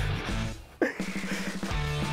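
Background rock music with guitar and a steady bass line, dropping out for a moment about halfway through and then coming back.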